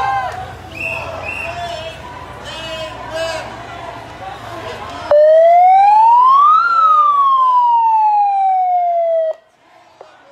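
Crowd voices and chatter, then about five seconds in a loud electronic siren sounds a single wail: its pitch rises for about a second and a half, falls more slowly for nearly three seconds, and the siren cuts off abruptly.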